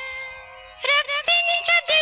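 Indian devotional music: a held note fades away, and a little under a second in a melodic instrument starts a quick run of notes.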